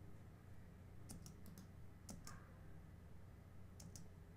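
Near silence: room tone with a few faint computer clicks in small groups, about a second in, just after two seconds and near the end.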